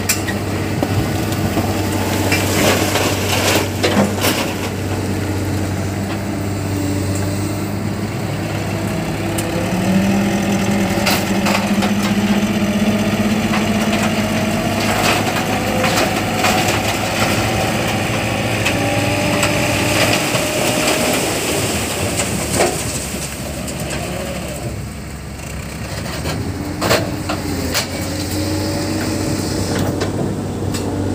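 Mitsubishi Colt Diesel dump truck's diesel engine running, with sharp knocks of rock in the first few seconds. From about ten seconds in, the engine is held at higher revs and climbs slowly while the hydraulic hoist tips the bed and the load of rock slides out the back. The engine then eases off, and the truck pulls away near the end.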